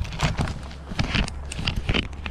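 Handling noise as a camera on its mount is moved and placed among conifer branches: irregular clicks, knocks and rustling of needles and twigs, over a steady low hum.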